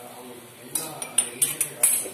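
Metal spoon clinking and scraping against the sides of a steel kadai as a curry is stirred. The spoon strikes in a quick run of five or six sharp clinks, starting a little before halfway.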